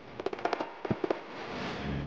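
Indoor spark fountain going off: a run of sharp, irregular crackles, then a steady hiss that swells from about halfway through.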